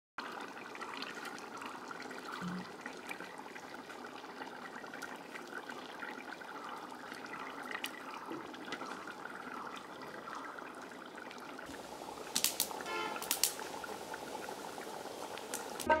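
A pot of curry simmering and bubbling steadily over a wood fire, with faint crackles. A few louder clatters and a short rising squeak come near the end.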